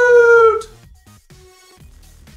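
A man's voice holding one long, high, drawn-out note, ending the sign-off catchphrase, which stops about half a second in. Quiet electronic outro music follows.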